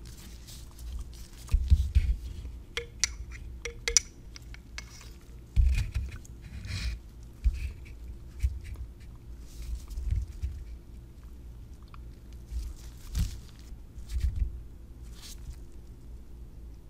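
Handling sounds of lab work: irregular low thumps and light clicks as a gloved hand lowers a small acrylic cylinder into a water-filled graduated cylinder and handles the glassware. A faint steady hum runs underneath.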